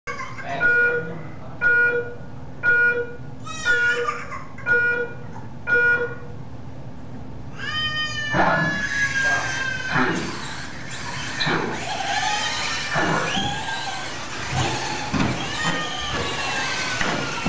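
Short electronic beeps from the race timing system, six of them about a second apart, then a longer tone at about eight seconds that starts the heat. The motors of the 1/10-scale short-course RC trucks then take over, several whines rising and falling in pitch as they accelerate and lift off around the track.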